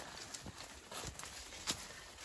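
Footsteps of several people walking on a dry dirt forest trail: a few irregular steps about half a second apart.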